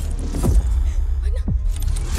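Film fight sound design: sudden hits with sweeps falling in pitch, about half a second in and again about a second and a half in, over a deep steady bass.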